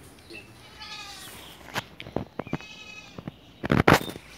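A farm animal calls twice with a pitched, bleat-like cry, once about a second in and again near three seconds. A few sharp clicks fall between the calls, and a loud burst of noise comes just before the end.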